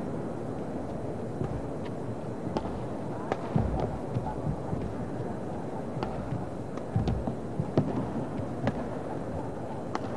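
Badminton rackets striking the shuttlecock in a fast rally: sharp, short cracks about once a second, back and forth, over the steady murmur of an indoor arena crowd. The last crack near the end is a cross-court smash.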